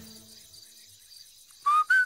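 Someone whistling a tune with pursed lips, starting about one and a half seconds in after near quiet: a few clear single notes that step upward in pitch.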